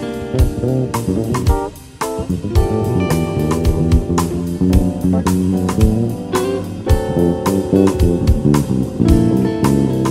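Live rock band playing an instrumental passage: electric bass and electric guitar over drums, with a brief drop in the playing just under two seconds in.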